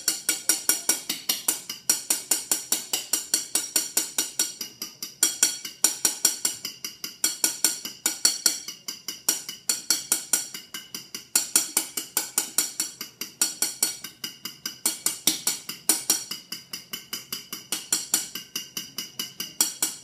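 A fork beating egg whites in a ceramic bowl, whipping them toward stiff peaks. It makes rapid, regular clicks against the bowl, about five or six a second, with a few short breaks in the rhythm.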